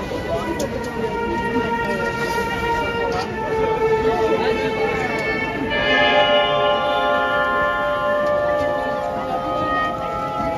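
Live symphony orchestra playing long held notes through outdoor speakers over crowd chatter. About six seconds in, a fuller and louder chord enters.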